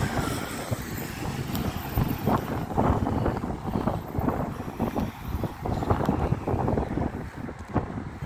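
Wind buffeting the microphone outdoors: an uneven, gusty low rumble that rises and falls throughout.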